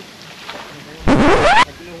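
A loud, brief whoosh about a second in, lasting just over half a second: a noisy rush with a pitch that rises steeply, starting and stopping abruptly.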